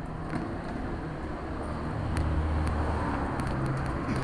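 Street traffic: a motor vehicle's engine running close by, with a low hum that grows louder about two seconds in, over general city noise.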